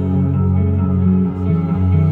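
Live rock band playing an instrumental passage without vocals, with electric guitar and bass guitar holding sustained low notes.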